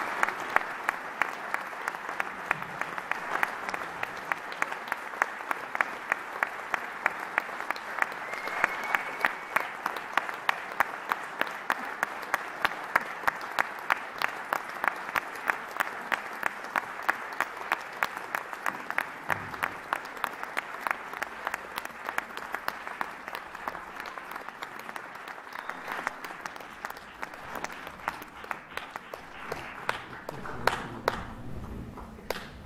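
Theatre audience applauding, the clapping falling into a steady rhythmic beat of about two claps a second over the general applause.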